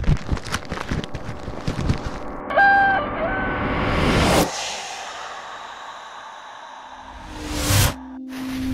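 Logo-intro sound design: a quick run of clicks and hits, then a short two-part chicken call sound effect, followed by a whoosh that rises and cuts off suddenly. After that comes a fading hiss and a swelling whoosh near the end.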